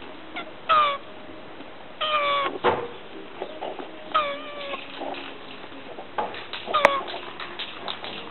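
Male tortoise mounting a boot and making its mating calls: about four short squeaky cries, each falling in pitch, repeated every couple of seconds, with a few light knocks in between.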